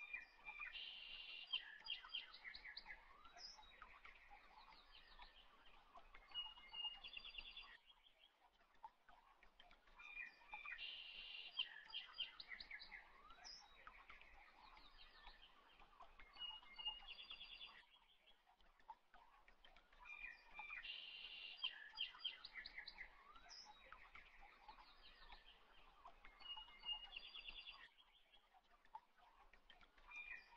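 Faint looped birdsong: small birds chirping and trilling in a recorded passage that repeats identically every ten seconds, with short quieter gaps between the repeats.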